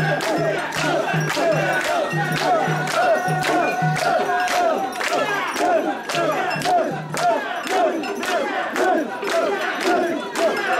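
A crowd of mikoshi bearers chanting and shouting together in rhythm, many voices overlapping, with sharp hand claps several times a second.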